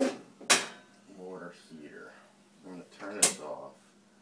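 Two sharp clicks, about two and a half seconds apart, with low, indistinct voices between them.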